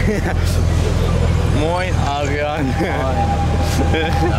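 Low, steady rumble of city traffic waiting in a queue, with people talking close by in the middle. A single steady high tone sounds through the last second.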